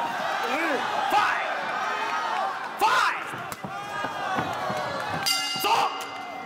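Kickboxing fight crowd shouting over the thuds of strikes landing in the ring; the loudest strike comes about three seconds in. About five seconds in, a ringing end-of-fight signal sounds for under a second.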